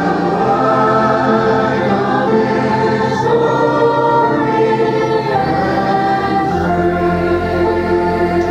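A group of voices singing a hymn together, in held notes that move together from chord to chord.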